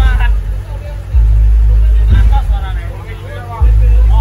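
A man's voice calling out in short pitched shouts, over deep, heavy booms that start suddenly and hold for about a second each, twice.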